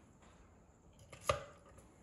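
A single sharp plastic click a little past the middle as a trimmer attachment is pushed into its hard plastic storage stand, with faint handling otherwise.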